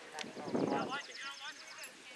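Background voices talking outdoors, with a rapid high-pitched ticking of about thirteen clicks a second running through most of it.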